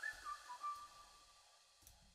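A few faint whistled notes: a quick rise, then two held tones that fade out just past the first second. A single soft mouse click comes near the end.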